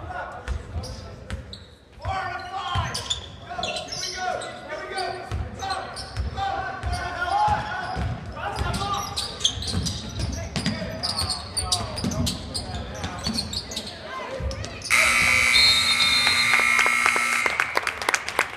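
Basketball dribbled on a hardwood gym floor amid crowd voices and shouts. About fifteen seconds in, a loud scoreboard buzzer sounds for about two and a half seconds, a steady tone that cuts off suddenly, marking the end of the 2nd quarter.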